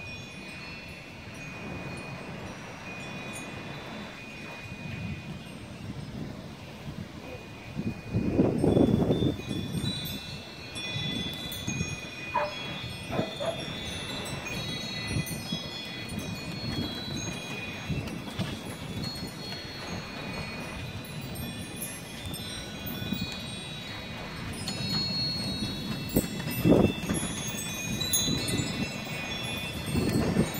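Porch wind chimes ringing with many overlapping metal tones, busier from about ten seconds in. Low gusts of wind buffet the microphone under them, the strongest about eight seconds in and another near the end.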